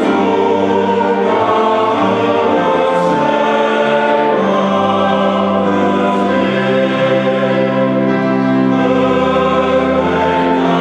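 Male-voice ensemble singing a hymn in parts, accompanied by organ, in a church.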